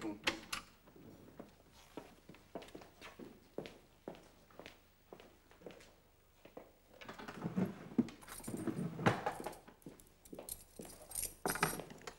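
Small objects and papers handled at a wooden desk: scattered light clicks and taps, with busier rustling and clinking about halfway through and again near the end.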